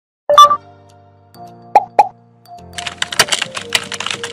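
Intro sound effects over a light music bed: a loud cartoon-style pop, two short pops, then a rapid run of keyboard-typing clicks.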